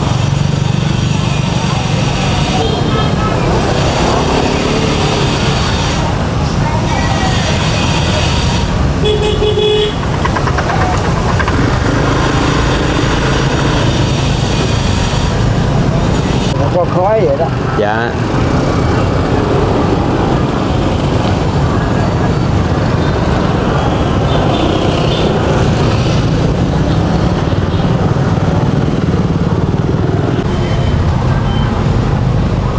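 Busy street traffic with motorbikes running and passing steadily. A short horn toot sounds about nine seconds in.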